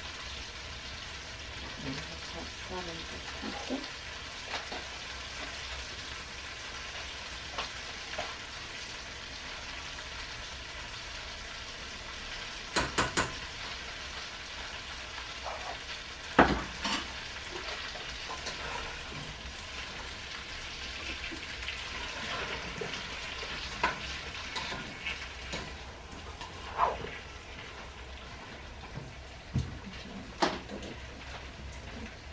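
Food frying in a pan with a steady sizzle. There are occasional clicks and knocks of utensils against pots: three quick ones about thirteen seconds in, and the loudest a few seconds later.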